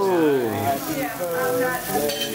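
Fountain sparkler candle fizzing steadily under people's voices; one voice slides down in pitch at the start.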